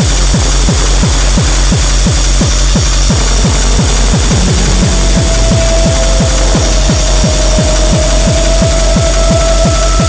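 Fast electronic dance music: a driving kick drum at about three beats a second under a dense, noisy wash, with a held tone coming in about halfway through.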